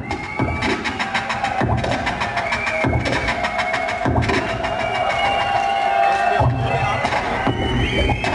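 Turntable scratching over a drum beat: rapid, chopped record scratches cut in quick succession as part of a competitive scratch routine. The bass of the beat drops out for about two seconds past the middle, then comes back.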